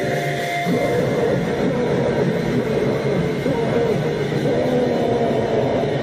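Noisecore band playing: a loud, dense, steady wall of distorted noise with no clear beat, a wavering distorted tone running through it.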